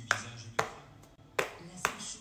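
Four sharp clicks or taps, irregularly spaced, over a faint low hum.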